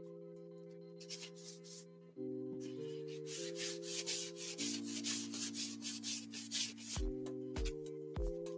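Quick rubbing strokes, about three to four a second, as paint is worked onto a hand-held craft piece with a paper towel, over soft background music with held chords. A few lighter strokes come first; the busy run starts about three seconds in and stops about a second before the end.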